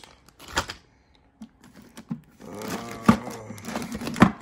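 Small wooden blocks and plastic pieces clacking in a plastic zip bag as it is handled and set down: a sharp knock about half a second in, a few light clicks, and another sharp knock about three seconds in.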